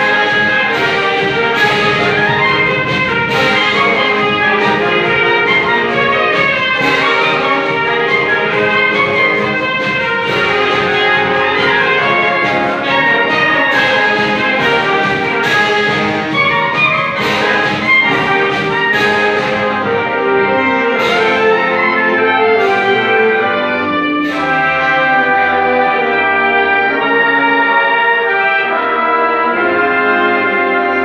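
A concert wind band of clarinets, flute, saxophones and brass with tubas plays a piece live under a conductor, with sharp percussion strikes about once a second through the first two-thirds.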